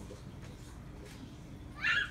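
Quiet church room tone, then near the end a brief high-pitched squeal from a small child, rising and falling in pitch.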